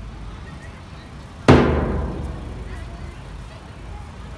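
A large bass drum is struck once with a padded mallet about a second and a half in. It gives a deep boom that fades slowly over about two seconds, and the previous beat is still dying away at the start.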